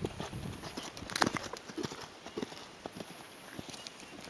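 Hoofbeats of a Thoroughbred gelding moving under saddle on a sand arena surface, an irregular run of soft thuds, with one louder, sharper sound about a second in.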